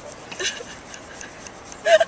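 Hand air pumps inflating jumbo tennis balls, worked in quick strokes that give a faint rasping, rubbing sound. A brief voice sound breaks in about half a second in and again at the end.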